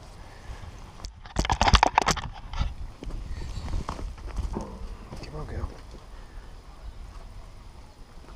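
A ewe bleats loudly, a short quavering call about a second and a half in, followed by quieter calls from the mob of sheep over a low rumble.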